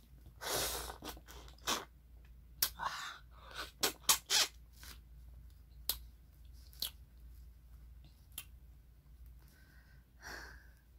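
Close-up eating of passion fruit: wet slurps of the juicy pulp and crunching of its seeds, heard as a run of short, sharp noises, busiest in the first half.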